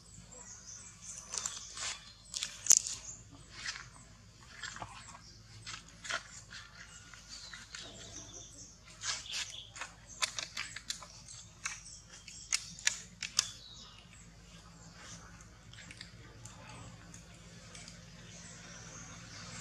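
Dry coconut husk fibres and leaf litter crackling as a baby macaque handles and picks at the husk: irregular small clicks and crackles, the sharpest about three seconds in, thinning out after about fourteen seconds.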